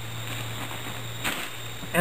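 Wool blanket being folded over and smoothed by hand, with one short rustle a little past halfway, over a steady low hum and hiss.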